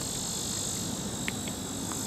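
Insects chirring steadily in a continuous high-pitched drone, with a couple of faint ticks in the second half.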